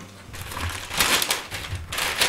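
Brown kraft padded envelope being torn open by hand: rough paper rustling that builds to a loud rip about a second in.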